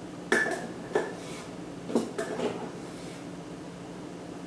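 A measuring cup knocking against the plastic bowl of a food processor as flour is tipped in: four sharp clacks, the last two close together, all within the first two and a half seconds.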